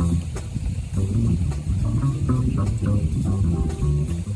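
Small jazz combo playing live: a plucked upright double bass carries moving low notes under electric guitar, with light drums and cymbals. The trombone is not playing.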